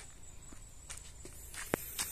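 Footsteps on a dirt path: a few faint steps, with one sharper tap near the end.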